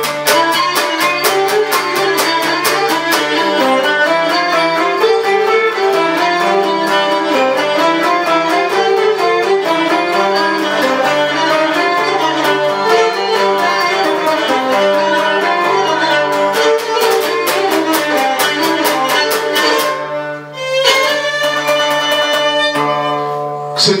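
Cretan lyra playing a fast dance melody over a laouto strummed in a steady driving rhythm. The music breaks off briefly about 20 seconds in, then resumes with longer held notes.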